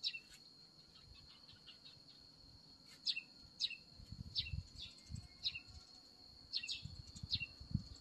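A small bird chirping again and again, each call a short falling note, over a steady high insect drone. Soft low bumps come in during the second half.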